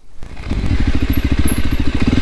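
Voge 300 Rally's single-cylinder engine running steadily at low revs, its exhaust pulses coming in about half a second in.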